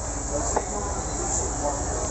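Steady background noise: an even high hiss over a low hum, with one faint click about half a second in.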